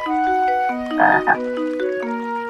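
Cartoon frog croak sound effect, two quick croaks about a second in, over an instrumental children's-song melody of plucked, mallet-like notes stepping up and down.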